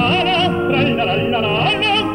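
Operatic singing with strong vibrato over an orchestra, in a full-voiced classical opera duet.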